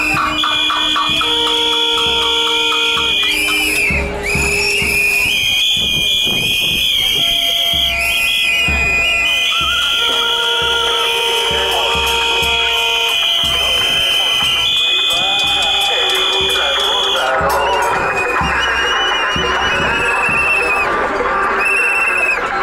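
Many protesters' whistles blown together in long, steady blasts at several different pitches over crowd noise. Near the end the whistling thins out and crowd voices come to the fore.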